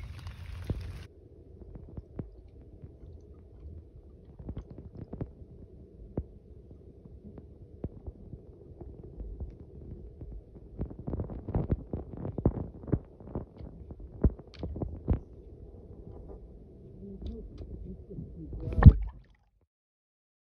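Muffled underwater sound from a camera submerged in a swimming pool: a low rumble of moving water over a faint steady hum, with scattered clicks and knocks, a run of sharper knocks in the middle, and one loud thump just before the sound cuts off.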